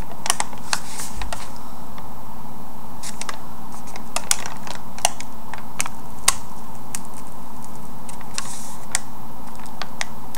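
Freezer paper being peeled slowly off a painted rock, giving a scatter of small, irregular crisp crackles as it lifts from the dried gel medium. A steady hum sits underneath.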